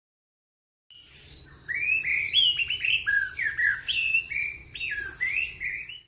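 Birdsong starting about a second in: a quick run of clear whistled notes that slide up and down, mixed with short fluttering trills.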